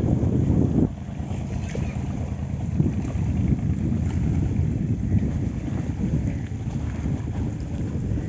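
Wind buffeting the microphone as a steady low rumble, easing a little about a second in.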